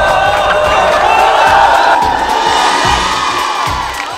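Several people shouting and screaming at once during a scuffle, over background music.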